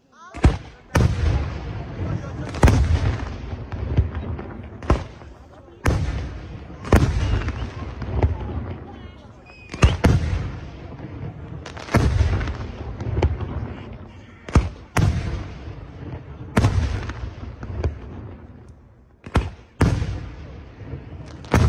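Aerial fireworks shells bursting in quick succession, with sharp reports about once a second over a continuous low rumble of booms and echoes. It starts after a brief hush.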